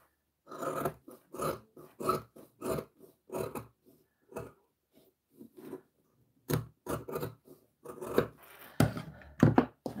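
Fabric scissors snipping through the edges of a quilted fabric pouch, trimming off the excess. A run of short snips, about one to two a second, sparse in the middle and loudest near the end.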